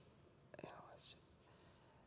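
Near silence: quiet room tone, with one faint breath at the handheld microphone about half a second in.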